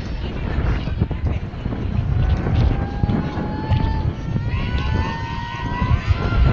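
Wind buffeting an outdoor camera microphone, with a long held high-pitched tone that rises slowly in pitch from about two seconds in.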